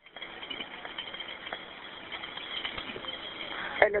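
Steady hiss of an open telephone line in a recorded 911 call, heard in a pause between the two voices, with faint background noise from the caller's end.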